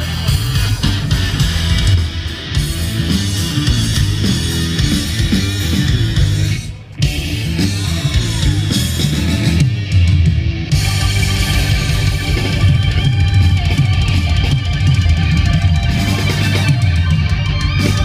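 Live street band playing loud rock music. The music drops away sharply for a moment about seven seconds in, then comes straight back.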